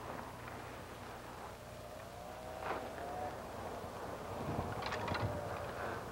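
Faint distant engine whine, wavering slightly in pitch, over a low steady hum, with a few light knocks as fishing line is fed by hand down an ice hole.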